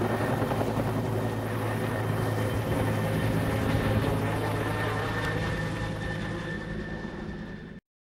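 Helicopter running overhead as it lifts a car on a sling line and flies off with it, a steady rotor and engine sound with a faint high whine. It slowly fades, then cuts off suddenly just before the end.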